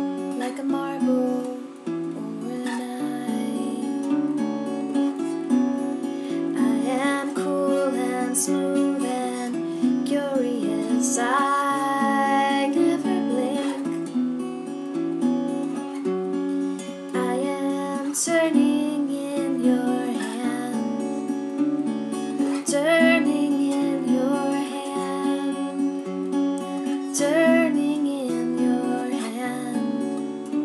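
Acoustic guitar playing an instrumental passage of a slow song, its notes ringing in a steady repeating pattern.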